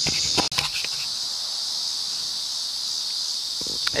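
Steady high-pitched insect chorus, with a few clicks and a sudden brief cut-out of the sound about half a second in.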